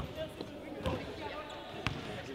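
A basketball bouncing on a hardwood gym floor: three thuds about a second apart, with voices chattering in the background.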